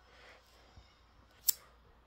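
A single sharp click about one and a half seconds in, against quiet room tone.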